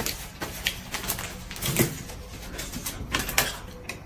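Scattered light clicks and rustles of hands handling a paper tissue and tableware at a dining table, a few sharp ticks spread irregularly through the moment.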